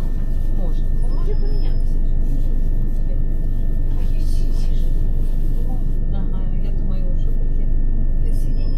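Inside the passenger cabin of a Class 375 electric multiple unit on the move: a steady low running rumble with a thin, steady high whine on top.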